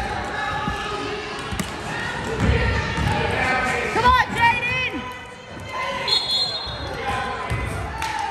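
A basketball bouncing on a hardwood gym court during play, with a brief high squeak about halfway through, typical of sneakers on the floor. Players' and onlookers' voices echo in the hall throughout.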